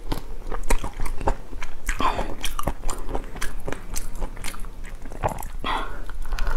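A large sauce-coated prawn being torn apart by hand and its shell bitten and crunched: a steady run of irregular, crisp clicks and cracks.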